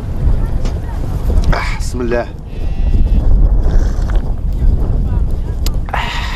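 Wind buffeting the microphone outdoors, a heavy low rumble. About one and a half seconds in comes a brief voice-like cry that falls in pitch.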